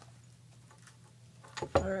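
A low steady hum under faint handling noise, then, near the end, a few sharp clicks as a soft carrying case is opened, followed by a spoken word.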